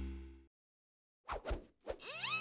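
The last chord of a cartoon's theme music dies away. After a short silence come three short, soft taps, cartoon sound effects, the last one near the end.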